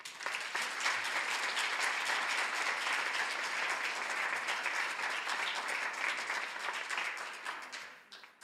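An audience applauding, starting all at once and dying away near the end.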